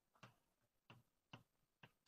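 Near silence with faint, irregular taps, about four in two seconds, typical of a lecturer writing an equation on a board.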